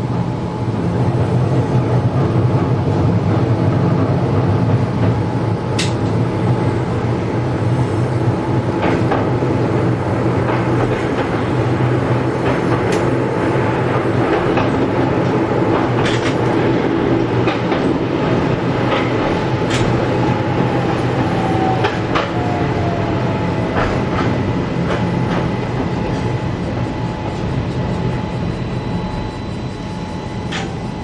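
Keihan 800 series train running along street track, heard from inside the driver's cab: a steady running hum with occasional sharp clicks from the wheels and rails. A whine falls in pitch about three quarters of the way through.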